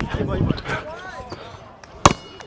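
A basketball bouncing with a few sharp thuds on a hard outdoor court, under the voices of spectators talking.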